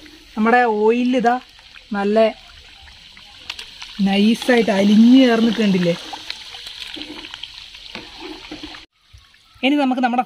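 Hot oil bubbling and sizzling in a steel kadai with pieces of chewing gum frying in it, a steady hiss throughout. A voice comes in over it in three short phrases, the last one longest, and the sound cuts out for a moment near the end.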